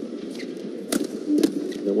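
Badminton rally: sharp racket strikes on the shuttlecock, one at the start and another about a second later, over a steady murmur of the arena crowd.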